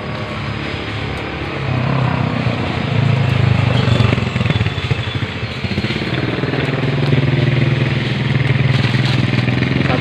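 A small engine running steadily, getting louder about two seconds in and staying at a steady pitch.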